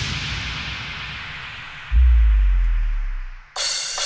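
Electronic dance music in a DJ mix. The track fades down as its treble dies away, then a deep sub-bass boom with a falling tone comes in about two seconds in and decays. The sound drops out briefly and the next track cuts in near the end.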